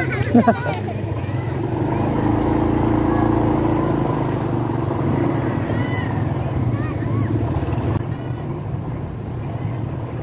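Small motorcycle engine running under way, a steady hum over road and wind noise, getting a little louder about two seconds in and easing off again after about five seconds.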